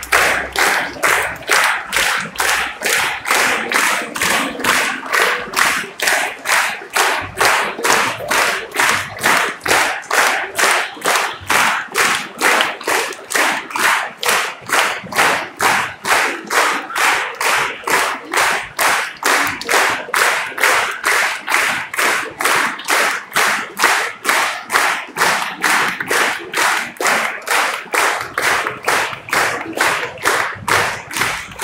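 A large audience clapping in unison, a steady even beat of about two claps a second.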